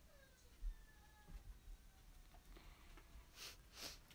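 Near silence: small-room tone, with a faint falling whine over the first two seconds, a soft low bump under a second in, and two faint breathy rustles a little past three seconds.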